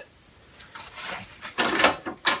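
Metal levers on an Atlas lathe being shifted by hand: a few short scraping clunks in the second half, the loudest near the end.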